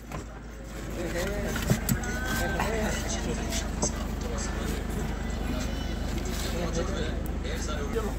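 Faint, indistinct voices outside a car and rustling with a few light knocks as a man climbs into the seat, over a steady low hum.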